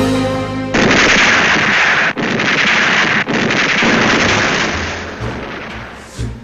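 Music with held notes breaks off about a second in, giving way to a loud battle sound effect of dense gunfire and explosions that fades away over the last two seconds.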